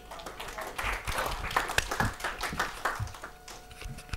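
Audience applauding, the clapping dying away about three seconds in.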